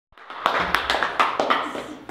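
A small audience clapping, starting about half a second in and dying away near the end.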